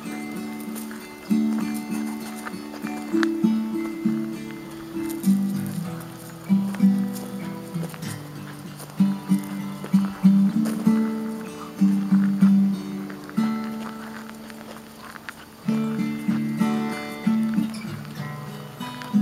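Acoustic guitar music: plucked notes, a couple a second, each struck sharply and left to ring.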